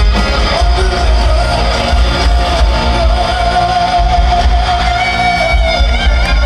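Glam metal band playing live through a stage PA, with electric guitar, bass and drums, heard from the crowd. A long held note rides over the band from about half a second in until nearly the end.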